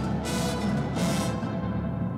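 A drum corps playing live: brass bugles and percussion holding a loud full-ensemble passage, with accented hits about a quarter second and a second in.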